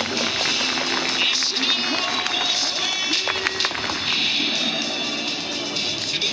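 Music played over a stadium's public-address speakers during a starting-lineup presentation, carrying on steadily.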